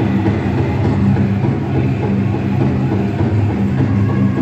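Powwow drum group playing a jingle dress song: a large drum beaten by several drummers, with their voices sung over it.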